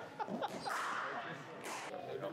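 Voices talking in a large indoor cricket net hall, with a brief knock and a short noisy burst as a bowled ball is played and meets the netting.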